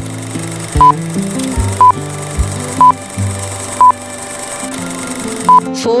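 Background music with a short, high electronic beep about once a second, five beeps in all, the loudest sounds here: a quiz answer timer.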